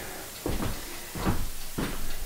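Footsteps across a wooden plank floor: three heavy footfalls about two-thirds of a second apart.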